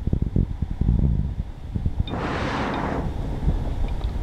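Wind buffeting the microphone in uneven low gusts. A louder rushing hiss comes in for about a second, around halfway through.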